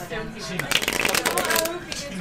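A new deck of playing cards being riffle-shuffled: a rapid flutter of card edges ticking against each other, lasting about a second, starting about half a second in.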